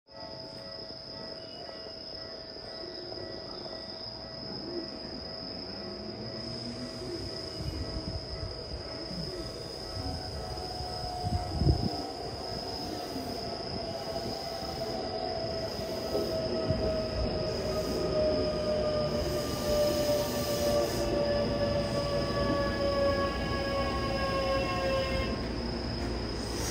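Keikyu 600 series train drawing into a station while braking. Its Mitsubishi GTO-VVVF inverter sounds as a cluster of tones falling slowly in pitch, over a wheel-and-rail rumble that grows louder as the train nears. There is one sharp knock about twelve seconds in.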